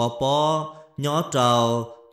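A man's voice speaking in a drawn-out, chant-like cadence: two long held phrases with a brief break near the middle.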